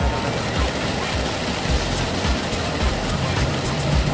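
Music with a low thumping beat about twice a second, under a dense rushing, whirring noise that sets in just as the kinetic wall of rotating cubes starts to turn.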